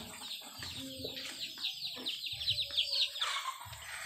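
A flock of chickens calling together: a dense, overlapping run of short, high, falling peeps, with a few lower clucks underneath.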